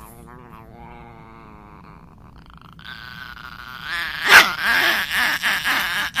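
Small dog growling, quietly and steadily at first, then louder and rougher from about three seconds in, with a sharp loud outburst about four and a half seconds in.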